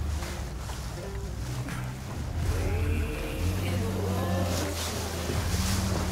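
Boat outboard motor running under way, a steady low hum with wind and rushing water over it.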